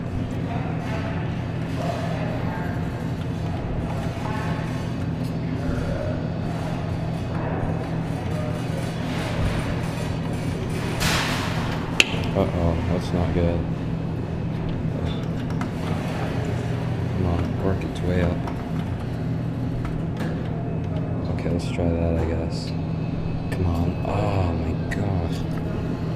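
Arcade background with a steady low electrical hum, music and distant voices. There is a short hiss about eleven seconds in, then a single sharp click.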